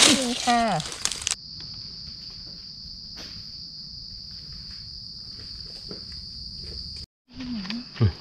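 Insects keep up a steady, unbroken high-pitched drone, with faint scattered ticks beneath it. A woman laughs briefly at the start. Near the end all sound cuts out for a moment, then the drone resumes.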